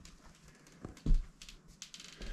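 Movement and handling noise: a couple of short, soft low thumps about a second in, the second the loudest, with scattered light clicks and rustles around them.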